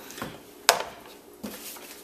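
A single sharp click about two-thirds of a second in: a tablet in a hard plastic shell case being set down. Faint handling rustle comes before and after it.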